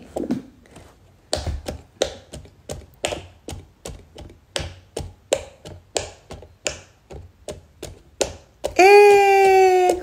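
A toddler's fingers pressing the silicone bubbles of an electronic pop-it game console, a run of irregular soft taps about two or three a second. Near the end comes a long held pitched sound, louder than the taps.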